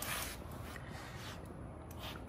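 Quiet room tone with faint rustling, low and even, with no distinct knocks or tones.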